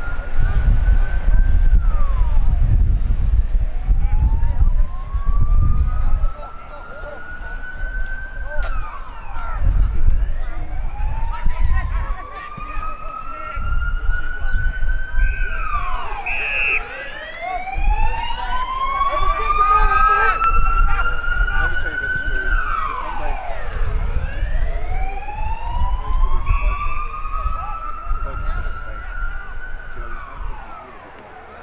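Emergency vehicle siren wailing in the distance, its pitch climbing slowly for several seconds and then dropping quickly, repeating about every seven seconds.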